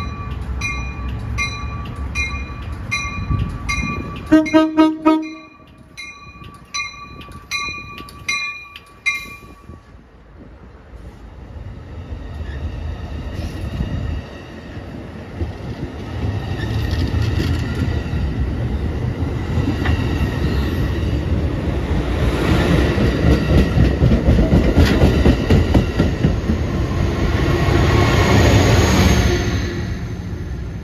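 Amtrak Pacific Surfliner train departing: a bell rings steadily for the first nine seconds or so, broken by a string of short horn toots about four to nine seconds in. Then the bilevel cars roll past with rising rumble and wheel noise, loudest in the last dozen seconds, dropping off just at the end.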